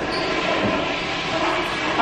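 Electric hand dryer running: a steady, loud rushing of air.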